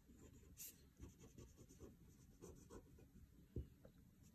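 Pen writing on paper by hand: faint, irregular scratching strokes, with one sharper tick about three and a half seconds in.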